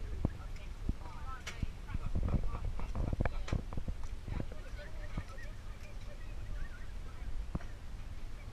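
A run of sharp clicks and knocks, densest from about two to four and a half seconds in, over a steady low rumble, with a few short chirping calls.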